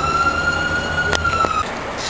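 Emergency-vehicle siren wailing: its pitch climbs and then holds high, cutting off abruptly about a second and a half in. Underneath is a low steady hum, with a sharp click just past a second in.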